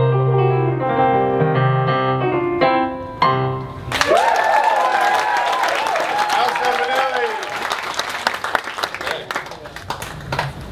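Digital piano playing the closing chords of a piece, ending about four seconds in. Audience applause and cheering follow, fading off near the end.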